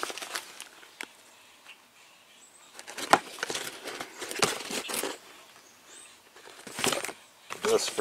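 Rustling and scraping of mesh sanding discs, their cardboard box and a foil packet being handled, in irregular bursts, busiest a few seconds in and again near the end.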